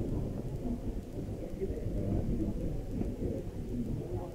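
Muffled low rumble from a phone microphone being handled and moved, with indistinct murmur of voices in a large hall underneath.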